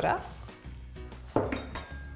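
Ceramic bowls and serving utensils clattering as spaghetti is served, with one sharp knock about a second and a half in. Quiet background music underneath.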